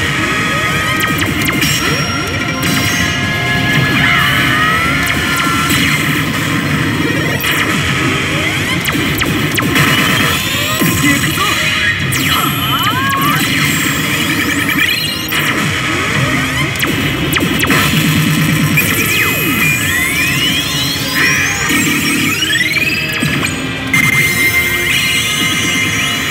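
Re:Zero pachislot machine playing its battle-sequence music and sound effects: loud, continuous music with crashing hits, and several rising swooshes near the end.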